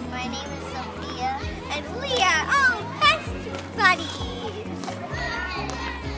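Children's voices, with several short, high-pitched calls in the middle, over background music.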